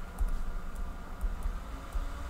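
Faint taps and scratches of a stylus writing on a tablet screen, over a low background rumble.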